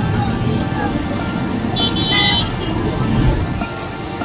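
Street traffic: a vehicle running past with a low rumble that eases near the end, and a brief horn toot about two seconds in, mixed with music.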